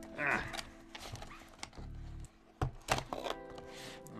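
Soft background music with held tones, with a few sharp clicks and taps after about a second and a half and again near the three-second mark from a candy cane being pulled out of its cardboard box.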